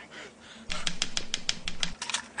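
Drinking from a gourd, heard as a fast run of about ten sharp clicking gulps, roughly eight a second, starting a little way in and lasting just over a second.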